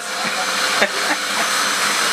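Steady hiss of a stainless-steel electric Turkish tea maker heating its water. There is a short clink just before a second in.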